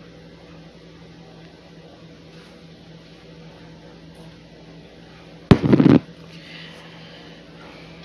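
A steady low kitchen hum, broken about five and a half seconds in by a loud half-second clatter of several quick knocks as the sauce jar is handled over the glass baking dish.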